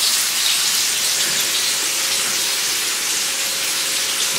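Hot oil sizzling steadily as cauliflower vade deep-fry, a dense, even crackling hiss.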